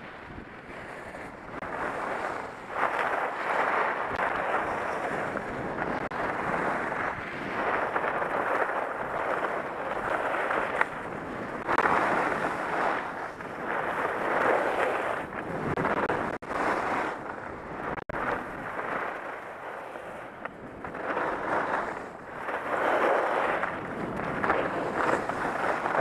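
Rushing noise of skiing downhill: wind on a helmet-mounted camera's microphone with skis hissing and scraping over groomed snow, swelling and fading every couple of seconds with the turns.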